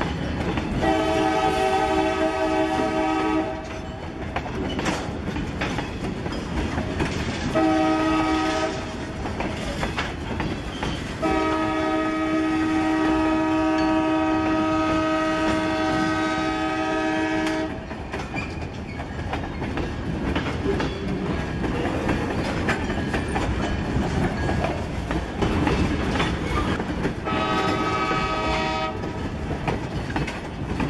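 CSX freight train rolling slowly past, its wheels clicking over the rail joints, while the diesel locomotive's multi-note horn sounds four blasts, the third held for about six seconds.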